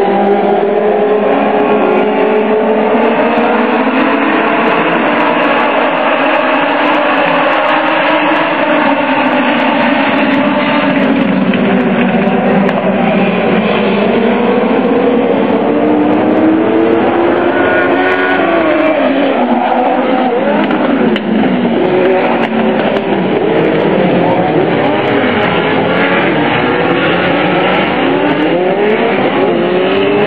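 A pack of Legends race cars, small cars with motorcycle engines, racing around the oval. Several engines are heard at once, their pitches rising and falling as the cars pass and work through the turns.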